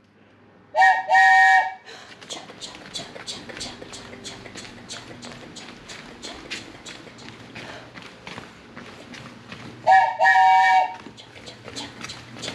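A toy train whistle blown twice, each time a short toot then a longer one on a steady chord, about a second in and again near the end. In between, a soft rhythmic 'chugga-chugga' chant, about three beats a second, imitating a train.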